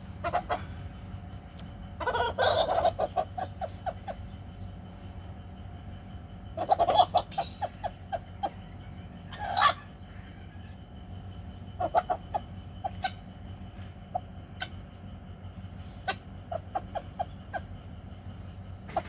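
Domestic chickens clucking: louder calls about two, seven and nine and a half seconds in, each with runs of short, evenly spaced clucks, and more runs of clucks near the end.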